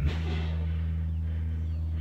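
A steady low hum with several overtones, unchanging in pitch and level.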